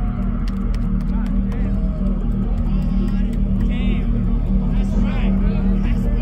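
Bass music from a DJ set over a festival sound system, heard from within the crowd: a loud, sustained deep bass with no clear beat, and crowd voices shouting over it.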